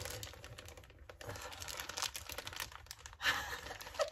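Crinkly packaging bag being pulled and torn open by hand: a run of small crackles and clicks, with a louder crackling burst a little past three seconds in. The bag is stubborn and hard to open.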